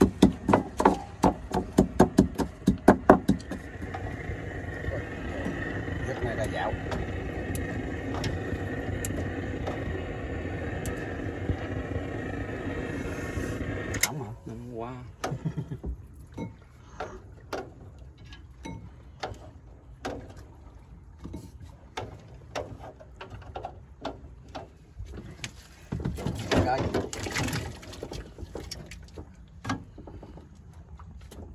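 Wooden pestle pounding chilies in a ceramic bowl, about three strikes a second, stopping about three seconds in. A steady hum then runs for about ten seconds and cuts off suddenly, leaving scattered clicks and knocks.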